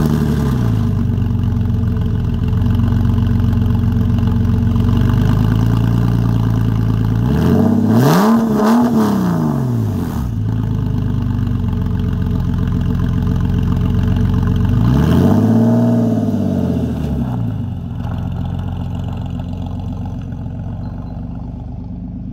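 1999 Porsche 911 Carrera (996) 3.4-litre flat-six running with its mufflers bypassed (straight-piped), very loud. It idles steadily, and the throttle is blipped twice, about eight and fifteen seconds in, each rev rising and falling over about two seconds.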